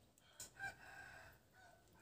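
A rooster crowing once, faintly, starting about half a second in and lasting about a second.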